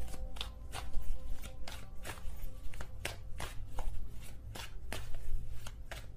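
Tarot cards being hand-shuffled: an irregular run of short card slaps and taps, about two or three a second.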